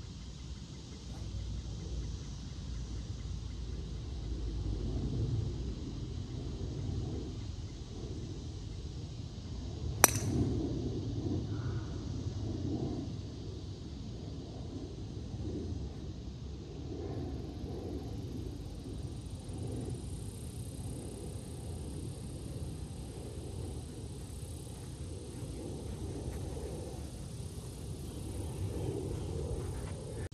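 A golf driver striking the ball off the tee once, about ten seconds in: a single sharp, ringing click, over steady low outdoor background noise.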